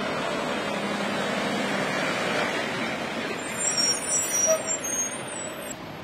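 Road traffic passing, a heavy vehicle's running and tyre noise swelling over the first couple of seconds. From about three and a half seconds in a high, wavering squeal joins it, the loudest part, and cuts off suddenly just before the end.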